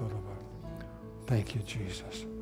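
Soft worship music on acoustic guitar with sustained keyboard notes. A voice comes in briefly about a second and a half in.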